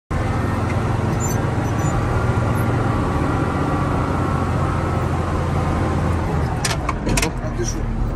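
Caterpillar motor grader's diesel engine running steadily, heard from inside the cab, with a few sharp clicks near the end.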